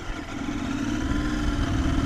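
Royal Enfield Continental GT 650's parallel-twin engine running as the motorcycle is ridden, its sound growing steadily louder through the two seconds.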